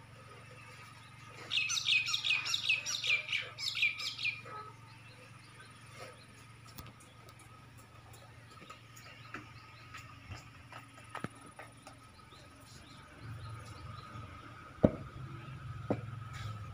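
A bird calling: a quick run of about a dozen sharp, high notes lasting some three seconds, followed by a few scattered faint chirps. There is a single sharp click near the end.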